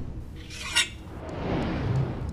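Editing transition sound effects: a short burst about three-quarters of a second in, then a whoosh that swells toward the end.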